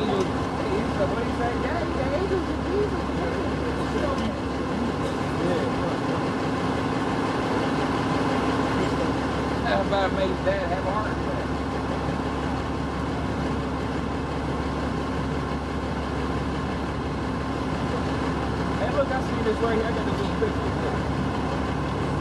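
City bus engine idling at the curb, a steady low hum under street traffic noise, with faint voices in the background.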